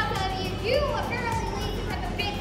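Children's voices, high-pitched talking and calling out, over a steady low background rumble.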